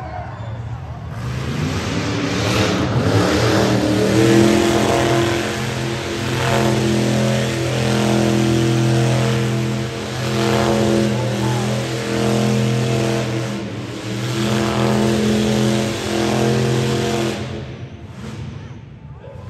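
Car engine revved high and held during a tyre-smoking burnout, with the hiss of spinning tyres over it. It starts about a second in, climbs in pitch over the next few seconds, eases off briefly a few times, and cuts off just before the end.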